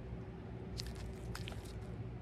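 Faint rustling and a few short crinkles and clicks, about a second in, from toys and papers being handled in a black plastic trash bag, over a low steady hum.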